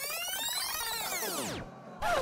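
A synthesized swooping sound effect: one pitch glide with many overtones that rises, arcs over and falls away steeply about a second and a half in. It marks the test video rewinding to replay the ball-passing scene.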